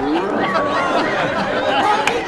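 A group of people talking over one another at once in lively chatter, no single voice standing out.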